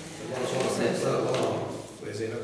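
Indistinct talk around a table, with a sheet of paper rustling as it is handled and passed across.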